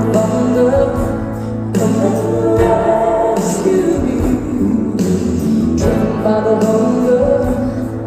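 A woman singing a slow pop ballad live with band accompaniment, in long phrases broken by short pauses about two seconds and five seconds in.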